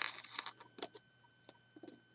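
Faint handling noises of hands and plastic Lego pieces: a brief rustle with sharp clicks at the start, then a few scattered light clicks.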